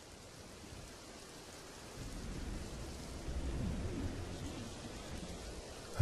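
Steady rain, with a low rumble of thunder that swells about two seconds in and eases off near the end.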